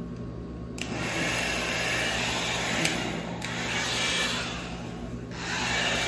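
Electric hot-air brush switched on about a second in, its fan and airflow running steadily. The sound dips briefly twice.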